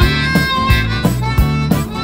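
Live folk-rock band playing: a harmonica carries long held notes over strummed acoustic and electric guitars, banjo and a drum kit keeping a steady beat of about three strokes a second.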